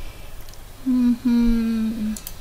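A person's voice humming: a short "mm" followed by a longer, slightly lower held "mmm", with no words.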